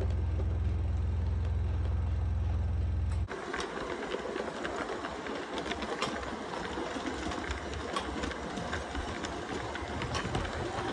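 LGB G scale steeple cab electric locomotive running under power from overhead wire: a steady low electric motor hum, which cuts off abruptly about three seconds in and gives way to a rattling, clicking running sound with scattered ticks.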